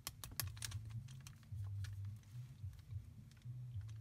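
Plastic clicking and clacking of a Megaminx puzzle's layers being turned by hand. There is a quick run of clicks in the first second, then sparser ones.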